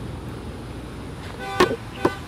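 A car horn gives two short toots about half a second apart near the end, over a steady low hum of street traffic.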